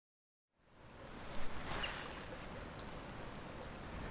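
Silence, then a steady outdoor hiss fades in about half a second in, with one brief sharp sound about a second and a half in.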